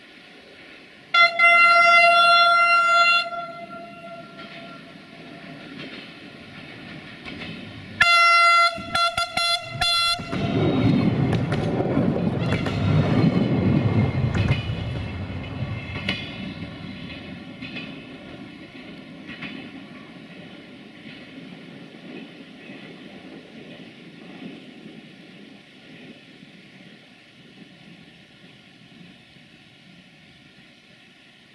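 Siemens Desiro diesel multiple unit sounding its horn: one long blast about a second in, then a run of short broken blasts about eight seconds in. It then passes close by with a rumble of wheels on rail, loudest around thirteen seconds, that fades slowly as it goes away.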